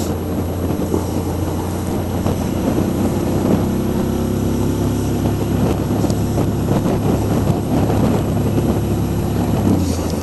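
Suzuki V-Strom DL650's V-twin engine, fitted with an aftermarket Akrapovic exhaust, running steadily at low town speed, mixed with wind and road noise.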